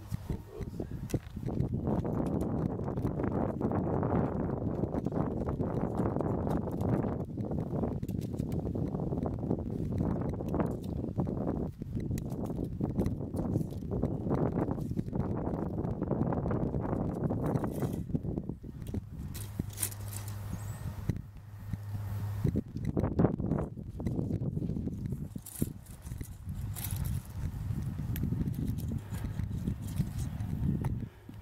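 Gusty wind buffeting the microphone, a rumbling rush that swells and eases, with a few sharp knocks and rustles in the second half.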